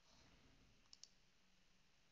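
Near silence broken by a faint computer mouse click about a second in, heard as two quick clicks close together.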